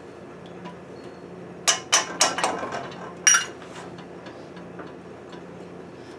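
Metal clinking against cookware: four quick sharp clicks a little under two seconds in, then one ringing clink a second later, over a low steady hum.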